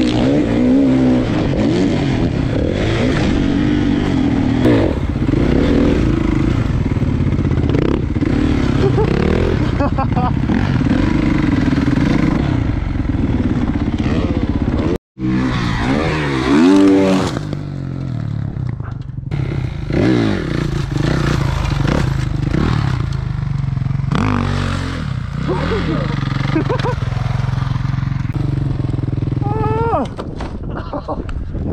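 Kawasaki 450 four-stroke dirt bike engine running hard on a rough trail, revs rising and falling, picked up on board the bike. About halfway the sound cuts out for an instant, then a dirt bike revs loudly as it goes off a jump.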